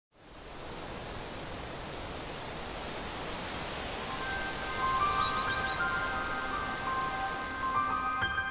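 A steady outdoor hiss fades in at the start. A bird gives short quick series of chirps near the start and again about five seconds in. Sustained music notes enter about four seconds in and build.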